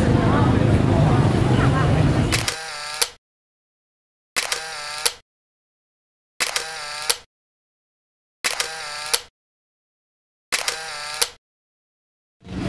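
Street noise with traffic and voices for about two and a half seconds, then a camera shutter sound effect repeated five times, about every two seconds, each under a second long and opening and closing with a click, with dead silence between.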